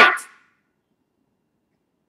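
The tail of a man's loud, drawn-out spoken word fading out in the first moment, then dead silence for the rest.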